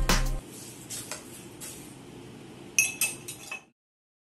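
Metal bar spoon clinking against a glass of crushed ice while a drink is stirred: one loud clink, a couple of lighter ones, then a quick run of clinks near the end before the sound cuts off.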